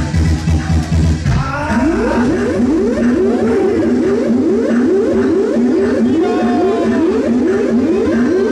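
Electronic dance music with a steady kick-drum beat that drops out a little over a second in, leaving a breakdown of a fast repeating synth riff.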